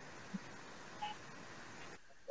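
Faint steady hiss of a video-call audio line, with two brief faint blips, one about a third of a second in and one about a second in.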